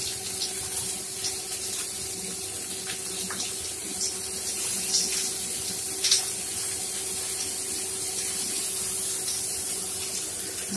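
Fish-paste-stuffed large chilies frying in hot oil in a frying pan: a steady sizzle with scattered pops and crackles, the sharpest about six seconds in.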